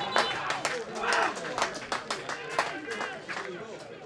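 Men's voices shouting and calling out across an open football pitch, overlapping, with several short sharp knocks among them.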